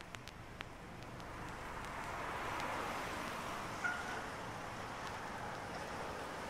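Faint outdoor city ambience: a wash of noise that swells over the first few seconds and then holds steady. There are a few light clicks in the first second and a single short chirp about four seconds in.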